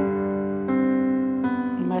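Background piano music: held keyboard chords that change twice.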